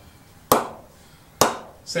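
A Dukes cricket ball striking the face of an Aldred Titan willow cricket bat twice, about a second apart, each a sharp knock with a short ringing tail. The bat sounds beautiful: a clean, powerful ping from a well-pressed blade.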